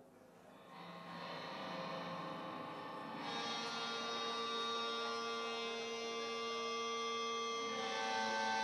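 A live band's sustained instrumental drone fading in: a held chord of steady tones swells up about a second in, a brighter, fuller layer joins around three seconds in, and the lower notes change near the end, as a song opens.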